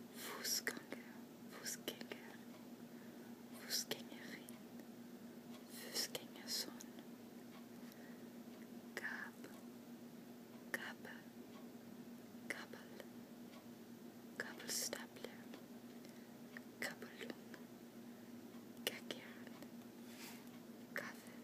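Soft whispering in short, separate words with pauses of a second or two between them, over a faint steady hum.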